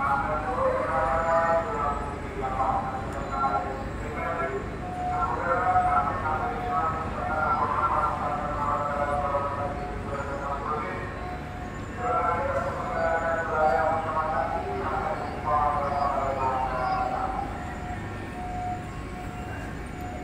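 Public-address announcement from port loudspeakers: one voice speaking in phrases, with a pause about halfway, over a steady low background rumble.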